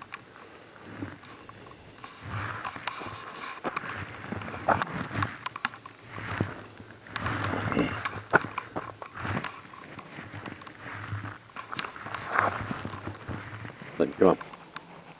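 Footsteps crunching over frozen ground and patchy snow, in uneven bursts with sharp clicks.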